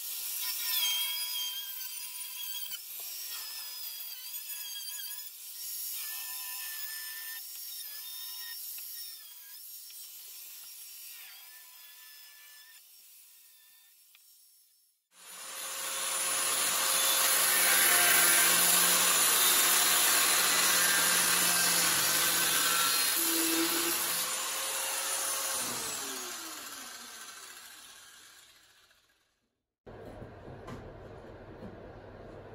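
An angle grinder with a cutting disc cuts through the steel of a Classic Mini door frame, its whine wavering as the disc bites. About halfway through the sound switches to a much louder spell of cutting. Near the end the pitch falls as the disc winds down, and the sound fades out.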